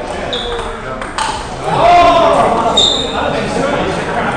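Table tennis balls striking bats and tables across several rallies, with two short high pings, one near the start and one near the end, echoing in a large hall. A voice calls out loudly about two seconds in, over general voices.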